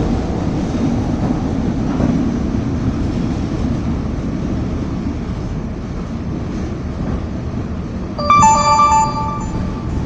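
Interior rumble of a CTA 2600-series rapid-transit car running on the rails at speed. Near the end a louder pitched tone of two notes sounds for about a second and a half over the rumble.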